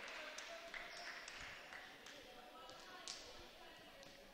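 Faint, echoing ambience of a gymnasium during a volleyball match: distant voices of players and spectators with a few faint knocks scattered through it.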